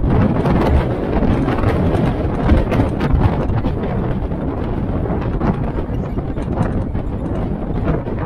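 Military-style Jeep driving along a road: a steady mix of low engine and road noise with frequent small irregular knocks and rattles from the open vehicle.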